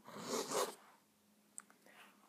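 Montblanc 234½ fountain pen's medium nib scratching across paper as it writes a looped letter, one scratchy stroke lasting under a second, followed by a faint tick about a second and a half in.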